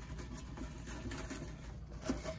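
Faint rustling of artificial floral stems, leaves and wired ribbon being handled and bent into place.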